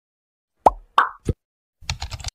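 Intro sound effect: three quick plops about a third of a second apart, each dropping in pitch, followed near the end by a short rapid burst of clicks.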